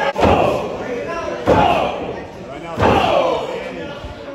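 Three heavy thuds on a wrestling ring's mat, about a second and a half apart, booming and echoing in a large hall, each followed by shouting from the spectators.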